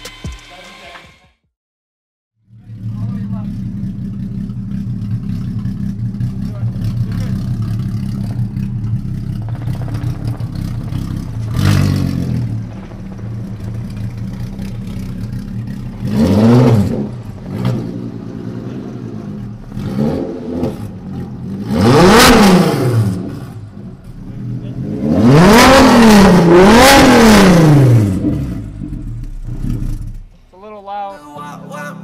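Volkswagen 3.6-litre VR6 in a Mk1 Citi Golf idling steadily, with a series of throttle blips that rev it up and let it fall back. The biggest revs come as two in quick succession near the end.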